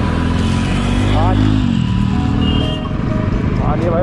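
Royal Enfield Bullet's single-cylinder engine running under way with wind and road noise, its note dropping about halfway through.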